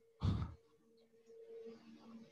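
A person's short sigh, one breath out lasting about a third of a second, followed by a faint steady hum.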